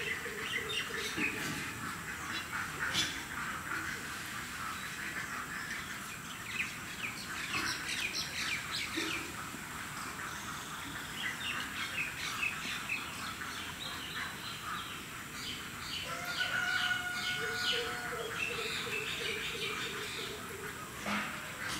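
Birds chirping and calling, with many short quick notes, thickening into rapid repeated runs of calls in the second half and a few longer held notes near the end.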